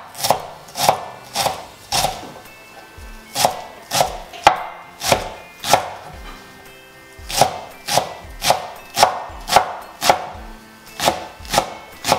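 Chef's knife chopping green onions on a wooden cutting board: sharp strokes about two a second, in short runs with brief pauses between them.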